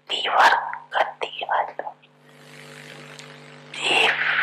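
A woman speaking Hindi into a microphone for about two seconds, then a pause filled with soft hiss, and her speech resumes just before the end. A steady low hum runs underneath.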